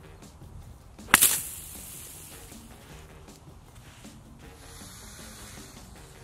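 A golf club striking a ball out of a sand bunker about a second in, a clean contact: one sharp crack followed by a brief hiss of sprayed sand.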